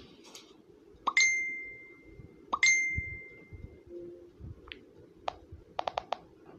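Two bright bell-like dings about a second and a half apart, each struck sharply and ringing on for about a second as it fades, followed by a few short clicks in the second half.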